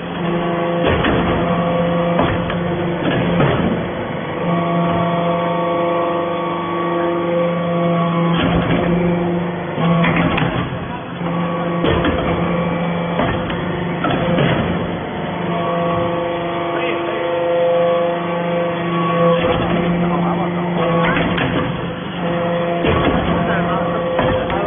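A hydraulic swarf briquetting press is running: the steady hum of its hydraulic pump unit, shifting in pitch a few times as the load changes, with sharp metallic clanks every few seconds as the ram cycles and briquettes are formed.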